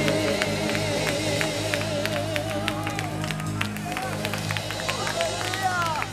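Gospel worship music winding down in church: held instrumental chords with a wavering, vibrato-laden voice over them, while the congregation and choir clap and call out scattered praise.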